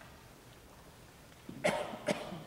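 A quiet room, then a person coughs once, loudly, about one and a half seconds in.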